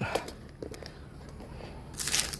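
Faint rustling and a few soft clicks of paper as a Bible's thin pages are handled, with a page-turn rustle starting right at the end, over a steady low background hum.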